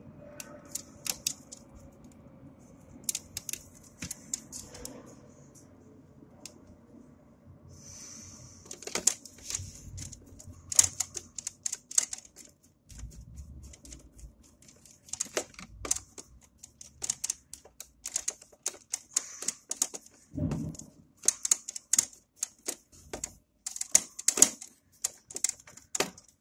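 A screwdriver working the terminal screws of a motor contactor while stranded wire ends are pushed into the terminals: irregular sharp small clicks and scratchy scraping, coming thicker in the second half.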